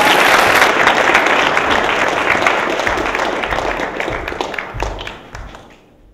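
Audience applauding at the end of a talk, fading away over the last couple of seconds.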